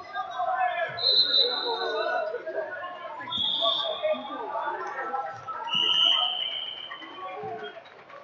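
Indistinct chatter of spectators in a large hall, with three steady whistle blasts of about a second each, about one, three and six seconds in, each lower in pitch than the last: referees' whistles.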